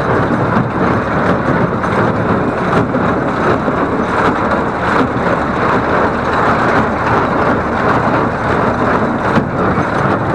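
Welger AP 53 conventional small-square baler running off a Fordson Dexta tractor, with the tractor engine and the baler's pickup and plunger working steadily as straw is fed into the pickup.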